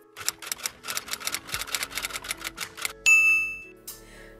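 Typewriter sound effect: a rapid run of key clacks for about three seconds, ending in a single ding of the carriage-return bell.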